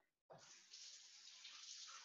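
Kitchen sink faucet running faintly as hands are washed under it, the water starting about a third of a second in.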